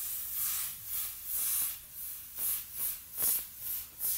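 Airbrush spraying black paint in about eight short hissing bursts, started and stopped with each stroke while a name is lettered onto a T-shirt.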